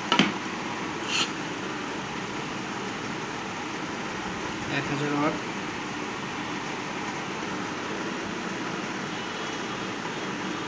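A halogen tube lamp and its wire leads are handled on a wooden board, giving a sharp click at the start and another short knock about a second later. Under them runs a steady fan-like hiss.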